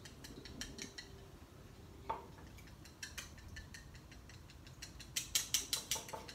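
Wooden chopsticks clicking against the inside of a bowl as egg white is stirred gently to break up green gel food colouring. A few light taps come in the first second, then only occasional ones, then a quick run of taps near the end.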